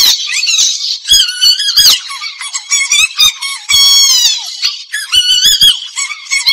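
A Tamil film dance song, its vocals and beat filtered and pitched up so the voices sound thin and squeaky. Nearly all the low end is stripped away except the sharp beat hits, and a falling glide comes about four seconds in.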